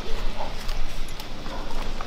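Irregular light thumps and clicks of cats' paws moving on a trampoline mat, over a steady low rumble.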